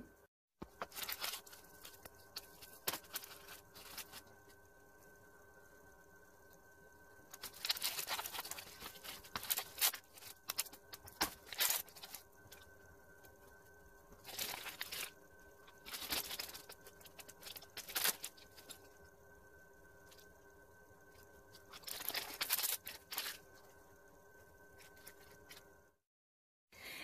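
Thin plastic wrapper crinkling and tearing as a Miniverse capsule's packaging is pulled open by hand, in a few spells of sharp crackling with quiet pauses between.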